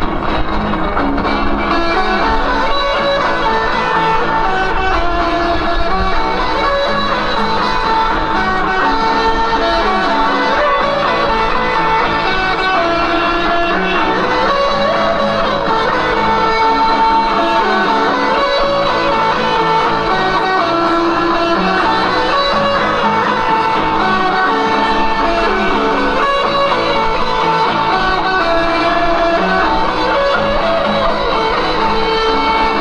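Live rock band playing at steady full volume, with a distorted-free-or-driven electric guitar played on a Flying V to the fore.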